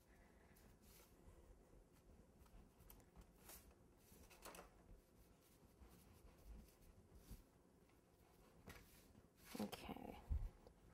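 Near silence with a few faint, soft scraping strokes of a long knife carving through a stacked sponge cake.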